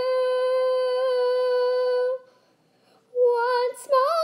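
A woman singing unaccompanied, holding one long, steady note for about two seconds. After about a second of near silence she starts singing again, her pitch wavering.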